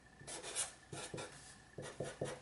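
Black felt-tip marker drawing on paper: a run of short, faint scratchy strokes with brief pauses between them, starting about a quarter second in.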